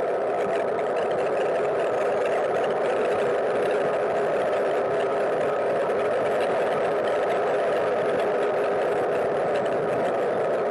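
Steady road and wind noise from a cargo bike rolling on asphalt, carried through the frame into a hard-mounted camera case, heard as a constant hum with no breaks.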